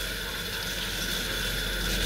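Water running steadily from a kitchen tap into a sink.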